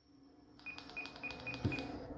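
Short high key beeps from an ICOM ID-52 handheld radio, five in quick succession starting about half a second in, as its keys are pressed to step through the Bluetooth settings menu, with light button clicks.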